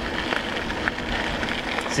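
Tyres of a KBO Breeze ST electric bike rolling over a gravel road: a steady hiss with scattered small crackles of gravel.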